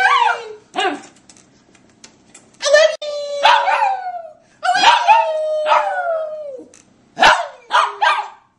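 A man yodeling and a small white Maltipoo howling along with him: a run of about five long, wavering calls that slide down in pitch, with short pauses between them.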